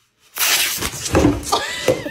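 A sudden loud scuffle with several sharp knocks, starting about a third of a second in: a startled rabbit bolting from under a lint roller.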